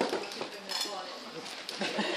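Light clinks and clatter of small hard objects, like tableware, being handled on a table, with a few sharper clinks about two-thirds of a second in and near the end.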